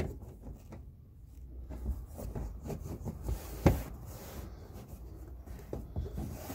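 Plastic trim on a 2008 Toyota Yaris's carpeted rear parcel shelf being pressed into place by hand: soft rubbing and handling noises, with one sharp plastic snap about two-thirds of the way through and smaller clicks at the start and near the end.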